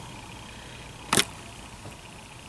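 Faint steady room tone, broken by one short, sharp click a little over a second in.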